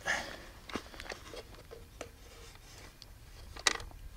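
A few faint, scattered clicks and taps from hands working at a wooden box trap.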